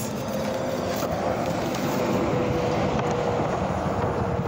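A motor vehicle going by: a steady wash of road noise with a faint hum.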